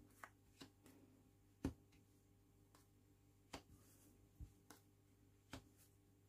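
Cards dealt one at a time onto a cloth-covered table. Faint, short taps, about seven of them spaced out, the loudest a little under two seconds in.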